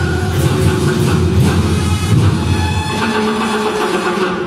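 Loud festival dance music dominated by heavy, rumbling drumming. A held sung note fades out just as the drumming takes over.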